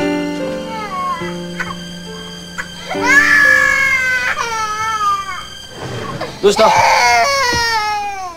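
An infant crying in loud, long wails that start about three seconds in, with a second bout near the end, over soft sad piano music.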